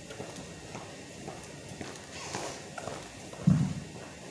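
Boxing workout footwork: shoes shuffling and tapping on a gym floor, with light knocks and glove contacts, then one heavy low thump about three and a half seconds in.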